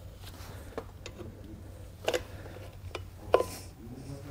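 A few light, scattered clicks and taps, the sharpest one near the end, as a grease seal is handled and pressed by hand into a brake rotor's hub.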